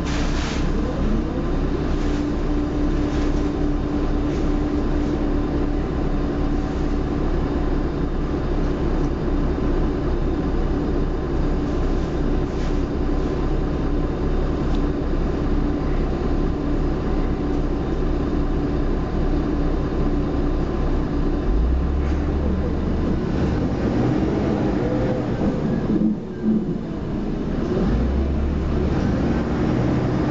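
MAN 12.240 single-deck bus with ZF automatic gearbox, heard from inside the rear of the passenger saloon while driving: a steady engine, drivetrain and road noise with a held whine through the first half. About two-thirds of the way through the engine note deepens as it pulls harder, with a brief dip a few seconds before the end.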